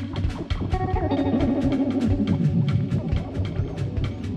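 Rock music played by a band: guitar over a drum kit keeping a fast, steady beat on the cymbals. After the middle, a guitar line falls in pitch.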